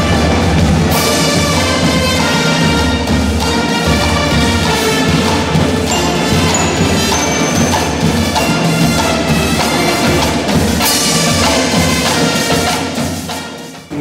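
A marching band of brass, saxophones and drums (sousaphones, trumpets, bass and snare drums) playing a lively arranged piece, fading out near the end.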